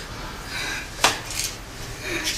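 A single sharp click or clink about halfway through, with soft noise around it.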